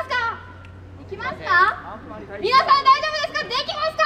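Young girls' voices speaking into microphones over a PA, in short bursts with a brief lull about half a second in, over a steady low hum.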